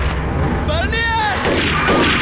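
Gunfire in a film shootout, with a shot near the end, over a steady low rumble. About halfway through, a man cries out once, his voice rising then falling.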